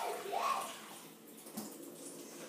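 A short wordless vocal sound from a girl about half a second in, then faint steady hiss.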